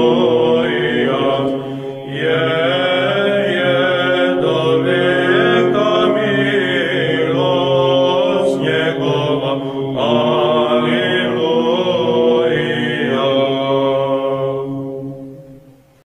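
Church chant sung by several voices over a steady held low drone, fading out near the end.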